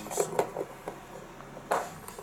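A few short clicks and knocks from hands handling wires and parts behind a scooter's front panel, with one louder knock near the end.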